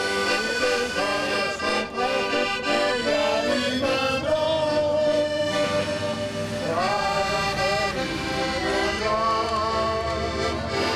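Piano accordion playing a melody, with held notes that waver in pitch.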